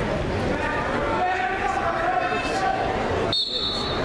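Gymnasium crowd noise at a wrestling match: spectators and coaches shouting over a steady hall babble.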